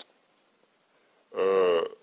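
A man's voice giving a single drawn-out hesitation sound, a held 'eh' about half a second long, after more than a second of near silence.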